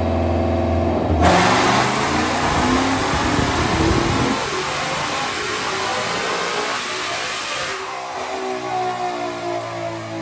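Roush-supercharged 2022 Ford Mustang GT 5.0-litre V8 on a chassis dyno, holding a steady low speed and then going to full throttle about a second in, revving hard up to about 6,500 rpm. Near the end it lifts off and the engine note falls away as it coasts down.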